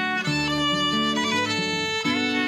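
Acoustic string band playing an instrumental passage: a fiddle carries the melody, with a short sliding bend midway, over strummed acoustic guitar and plucked upright bass.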